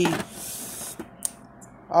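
A soft hiss for under a second, then a single light click a little over a second in, over faint room tone.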